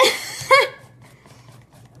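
A woman's short breathy laugh, followed by faint, scattered light clicks of a wire whisk against a stainless steel bowl as thick batter is stirred.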